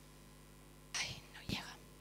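A woman whispering briefly into a handheld microphone: two short breathy sounds about a second in, the second with a soft thump.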